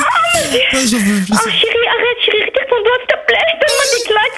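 Wordless vocal sounds: a low voice gliding up and down in pitch during the first second and a half, then a long, wavering, higher-pitched moaning sound held through the rest.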